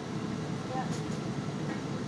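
Steady low rushing noise of a kitchen range hood fan running over the gas stove.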